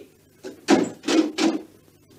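A short, soft knock followed by three quick, loud thumps or bangs about a second apart in all, each with a brief ring-out.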